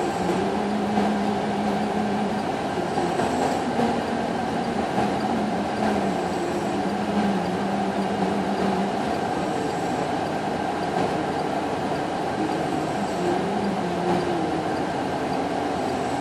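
Diesel power packs and hydraulic drive of a self-propelled modular transporter (SPMT) running steadily under load as it creeps a heavy tank along. The hum wavers slightly in pitch, and a faint high tone repeats about every three seconds.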